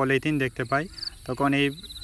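A man's voice talking, with a high, pulsing insect trill in the background, typical of a cricket.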